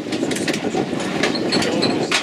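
A boat under way on choppy river water: a steady rumble with frequent irregular knocks and slaps of water against the hull.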